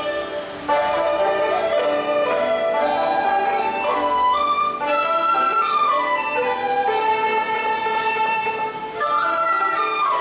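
A Chinese traditional orchestra playing a melody, with a bamboo dizi flute and bowed erhu over plucked pipa and liuqin. There are short breaks between phrases about half a second in and near the end.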